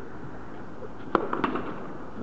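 Tennis ball impacts: one sharp pop about a second in, then two lighter taps close after it.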